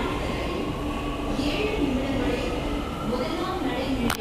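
Steady rumble of a metro train running in a station.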